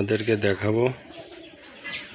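A man's voice speaking for about the first second, then a quiet background with a few faint bird chirps.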